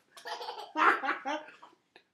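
Baby laughing in a run of short, high-pitched bursts, loudest about a second in and trailing off.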